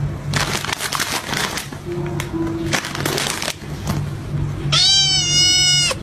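A plastic packet crinkled by hand in bursts for the first few seconds, a sound the cat knows and answers. Near the end a cat gives one long, loud meow that falls slightly in pitch, over background music.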